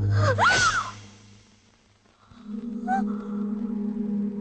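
Film background score: a low droning chord, broken about half a second in by a short cry whose pitch sweeps up and down. The score then drops to near silence for about a second and comes back as a steadier low drone from a bit over two seconds in.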